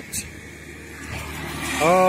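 A motor vehicle on the nearby road, a low rumble without clear pitch that grows louder from about a second in. There is a short click near the start.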